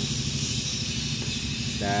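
Steady background noise, a low rumble under an even hiss, with no distinct knocks or clicks. A man's voice begins near the end.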